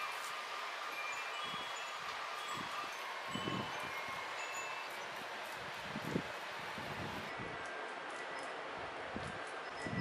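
Hands pressing crumbly motichoor laddu mixture into balls in a steel bowl, with a few soft bumps, over a steady hiss with scattered faint chime-like tinkling tones.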